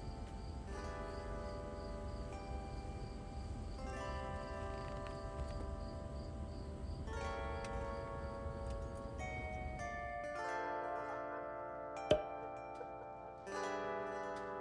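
Background music of plucked, chime-like chords that change every few seconds, over a low road rumble inside a moving car that stops about ten seconds in. A single sharp click comes near the end.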